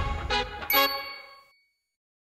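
Bell-like chime notes of an outro jingle: two struck notes in quick succession, each ringing out, the whole fading away by about a second and a half in.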